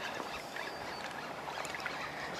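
Faint, steady wash of wind and small waves on open water, with a few faint ticks.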